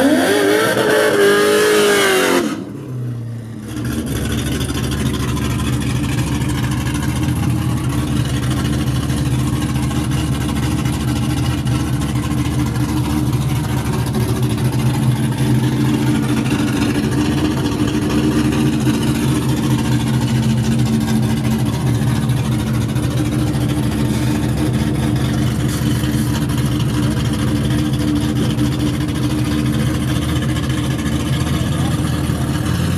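Nitrous-equipped C5 Corvette V8 engine idling steadily. In the first couple of seconds the engine is louder, with a pitch that rises and falls, before a brief dip in level.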